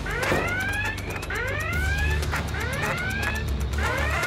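High-water-level alarm sounding: an electronic whoop that sweeps up in pitch, repeated over and over.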